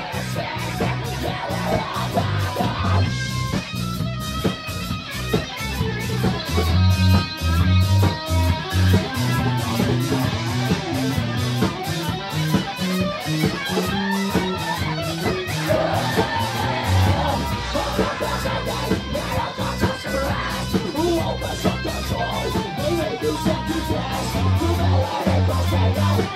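A rock band playing live and loud: electric guitar, bass guitar and a drum kit with a steady, dense beat, recorded close up on a phone.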